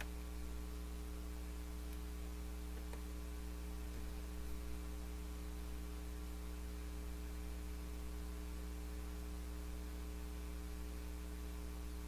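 Steady low electrical mains hum with evenly spaced overtones, unbroken throughout, with a few faint clicks in the first few seconds.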